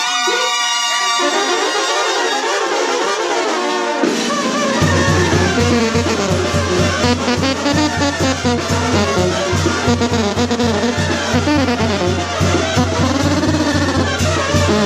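Mexican brass band (banda) playing live: trombones, trumpets and clarinets carry the tune, and a low, pulsing bass part with a steady beat comes in about five seconds in.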